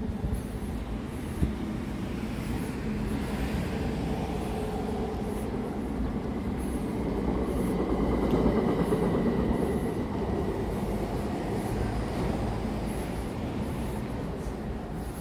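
A train passing on the elevated concrete viaduct overhead: its rumble swells over several seconds to a peak about two-thirds of the way through, then fades, with a faint high whine at its loudest.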